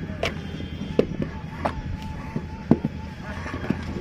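Hand-moulding clay bricks: sharp knocks and slaps of wet clay and a wooden brick mould, about five in four seconds, over a steady low hum.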